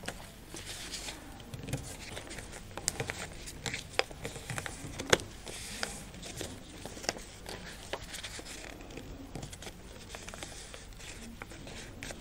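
Two stacked sheets of coloured paper being fan-folded and creased by hand on a table: soft paper rustling with a scatter of sharp crinkles and clicks as the folds are pressed down.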